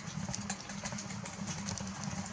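A low, steady engine-like hum with scattered light clicks over it.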